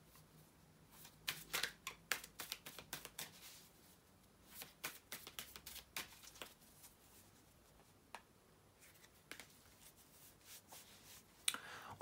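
A deck of tarot cards shuffled by hand: faint, irregular clusters of card clicks and flicks, thinning out in the second half.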